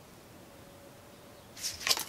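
Quiet room tone, then a brief swish and a sharp click near the end.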